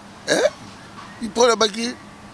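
A man's speech: a short rising vocal sound, then a few words.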